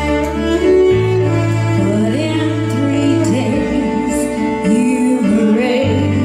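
Contemporary Christian worship song played live: a cello bowed in long, held low notes under a woman's singing voice.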